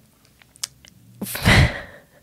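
A woman's short, breathy burst of laughter into a close microphone, about a second and a half in, after a few faint mouth clicks.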